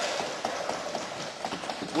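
Many members thumping their desks in a parliament chamber: a dense, irregular patter of knocks in a reverberant hall.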